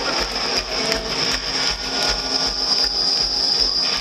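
Rock-concert crowd noise between songs, dense and steady with scattered claps. A low thud repeats roughly twice a second underneath.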